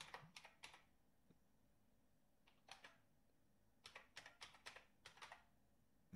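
Faint computer keyboard typing as a name is entered into a text field: a few keystrokes at the start, a few more about two and a half seconds in, then a quicker run of about eight keystrokes from about four to five seconds in.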